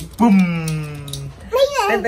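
A voice drawing out a long vocal "boom" sound effect that falls steadily in pitch, followed near the end by a short wavering vocal sound.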